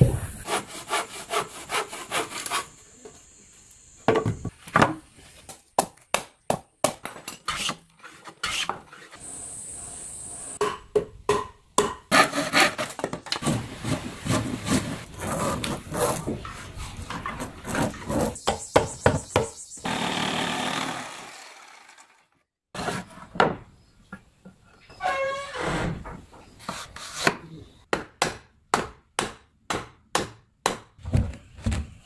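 Hand work on a wooden log beehive: runs of quick rubbing and sawing strokes on wood, broken up by sharp knocks and taps.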